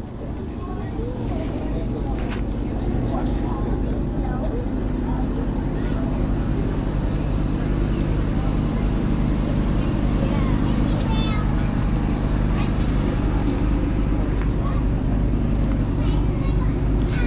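Steady low drone of an engine running at idle, growing a little louder over the first few seconds, with faint voices in the background.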